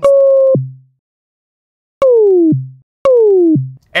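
Ableton Live's Operator synthesizer plays a kick-drum patch three times, with the pitch-envelope decay set so long that each hit becomes a siren-like tone. Each hit is a high tone gliding downward for about half a second, then dropping abruptly to a brief low tail. The first glide is nearly level; the second and third, about two and three seconds in, fall more steeply.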